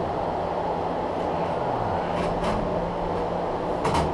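Steady mechanical hum and noise, with a few light clicks and a sharper click near the end as metal parts are handled at the combine's elevator.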